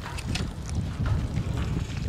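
Wind buffeting the microphone in a low, uneven rumble that grows stronger about a second in, with scattered short rustles from footsteps in grass.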